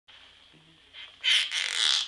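A hand rubbing over a covered microphone, making a loud scratchy squeaking burst that starts a little over a second in.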